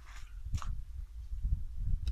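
Low, uneven rumble and handling noise from a handheld camera being moved, with one short click about half a second in.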